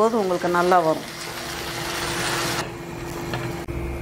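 Chopped tomatoes and dried red chillies sizzling in a nonstick kadai. About two and a half seconds in, the hissing sizzle suddenly turns dull and muffled as the pan is covered with a glass lid, followed by a couple of light clicks.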